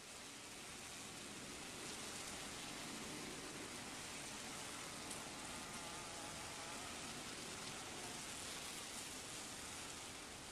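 Honey bees buzzing around their hive: a faint, steady hum with a few wavering tones, over an even hiss.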